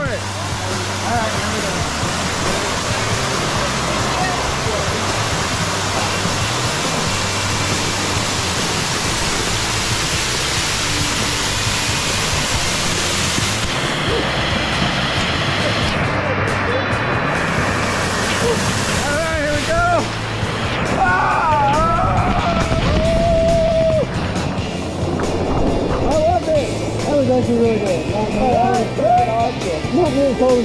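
Waterfall pouring into a pool, a loud steady rush and splash of falling water close to the camera, over background music with a steady bass line. In the last third the rush eases and voices with rising and falling pitch come in over it.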